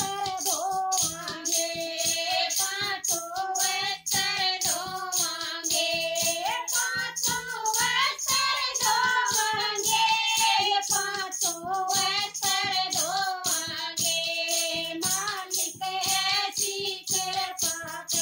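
Several women singing a Haryanvi devotional bhajan in unison. A steady rhythm of hand-held clappers and a hand-struck drum beats under the voices throughout.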